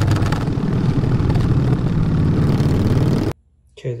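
Harley-Davidson V-twin motorcycle engine running steadily while riding, with road and wind noise; it cuts off abruptly a little over three seconds in.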